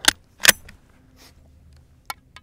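Two sharp metallic clicks about half a second apart, the second with a brief high ring, as metal is handled by hand.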